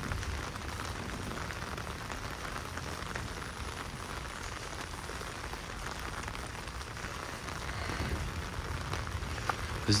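Steady rain falling on wet paving and greenery.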